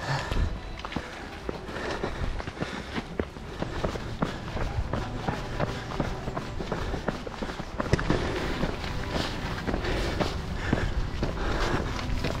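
Running footsteps of a group of trail runners, an irregular patter of footfalls over a steady low rumble.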